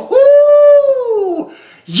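A man's high falsetto whoop: one long 'woo' held for just over a second, then sliding down in pitch as it fades.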